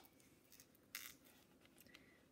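Faint paper swish of a hardcover picture book's pages being turned, one brief rustle about a second in, with near silence around it.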